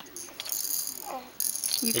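A plastic baby activity toy rattling as the baby grabs and shakes it, its beads and rings clattering, mostly in the first half; a woman's voice starts near the end.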